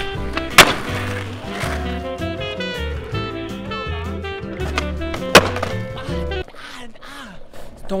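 Background music with a steady bass beat, cut twice by a loud, sharp crack of a skateboard hitting concrete: once about half a second in and again about five seconds in. The music drops out near the end.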